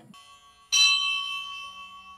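A bell struck once, about two-thirds of a second in, ringing with a few clear steady tones that fade away over about a second and a half.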